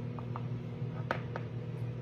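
Steady low hum of a microwave oven running, with about four light taps as buns are pressed into a metal muffin pan.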